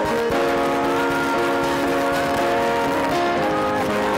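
Live gospel worship music: a group of women singers in harmony with band accompaniment, holding long notes.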